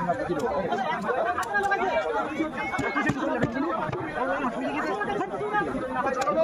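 Several people chattering over one another, with no one voice standing out.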